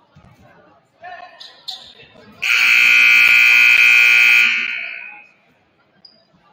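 Gymnasium scoreboard buzzer sounding as the game clock hits zero, marking the end of the period: one loud, steady horn note starting about two and a half seconds in, held for about two seconds, then trailing off.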